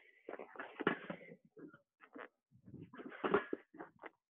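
A low exercise bench being grabbed, dragged and set down on rubber floor mats: irregular knocks and scrapes, a cluster in the first second and a half and another about three seconds in.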